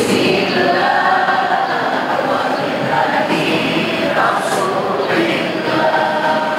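A man singing an Islamic devotional chant (sholawat) into a microphone, drawn-out melodic lines with other voices joining in.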